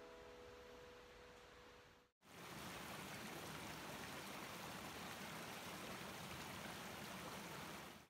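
The last guitar notes ringing out and fading, then after a brief break the quiet, steady rush of a shallow stream running over pebbles.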